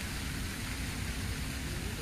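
Steady outdoor background noise: an even rushing hiss with a low rumble underneath.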